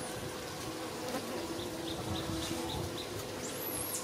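Outdoor ambience of insects buzzing steadily, with a run of short high bird chirps at about four a second in the middle and a high whistled bird call that rises and falls near the end.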